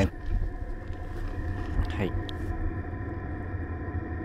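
Exhaust outlet of a running 2 kW FF parking heater under a van: a steady low combustion rumble with a steady hum above it.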